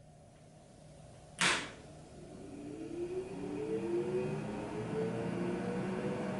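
A K40 laser cutter's power switch clicks on about a second and a half in, then a fan motor in the machine spins up, its whine slowly rising in pitch over a steady hum that grows louder.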